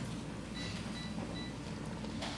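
Three short, evenly spaced high electronic beeps over a steady low room hum.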